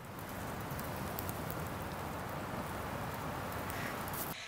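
Steady outdoor background hiss with a few faint light crackles, in a winter forest.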